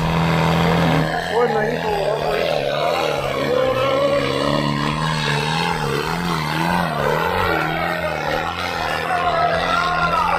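Modified diesel tractor engine running hard under load while dragging a disc harrow. Its pitch wavers up and down over and over as the revs surge and sag.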